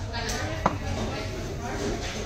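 Background chatter of voices in a restaurant dining room, with one sharp click about two-thirds of a second in.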